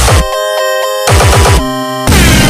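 Electronic dance music in a glitchy breakdown: the kick-drum beat cuts out twice while chopped, stuttering synth notes play, then the full beat comes back in.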